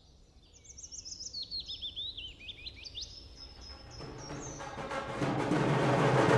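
Birds chirping in quick repeated calls for about three seconds, then music swelling in from about four seconds in and growing louder toward the end.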